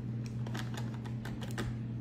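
Screw cap being twisted off the plastic water reservoir of a Norwex mop sprayer attachment: a run of small, irregular plastic clicks.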